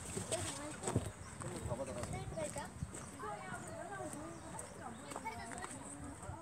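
Indistinct voices talking, not clear enough to make out words. A few sharp knocks, the loudest about a second in, are typical of footsteps while walking.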